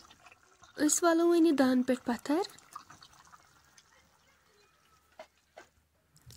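A voice speaking for about two seconds, then near silence broken by two small clicks near the end.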